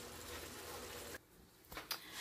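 Faint steady background hiss, broken a little over a second in by a short gap of complete silence, followed by a few soft clicks of the phone being handled as it swings round.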